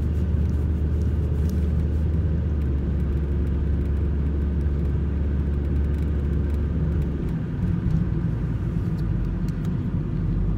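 Car interior road noise while driving: a steady low rumble of engine and tyres heard from inside the cabin, its low drone dropping in pitch about seven seconds in.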